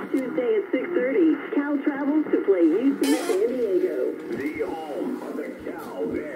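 Radio broadcast voice playing through a small radio's speaker, thin-sounding with little above the midrange. A brief hiss sounds about three seconds in.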